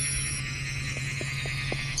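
Background score: sustained, steady chords held through, with a low steady drone underneath.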